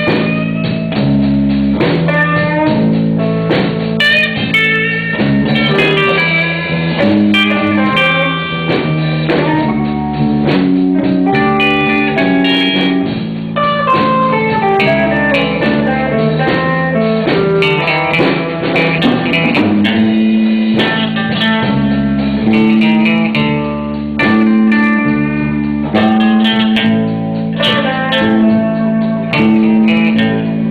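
Live blues band playing an instrumental blues progression, with guitar lines over a steady low bass.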